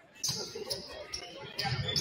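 A basketball being dribbled on a hardwood gym floor, about two bounces a second, with sneakers squeaking.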